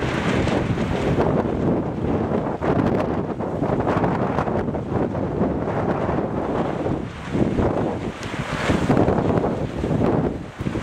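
Wind blowing across the camera microphone: a gusty rumble that swells and eases.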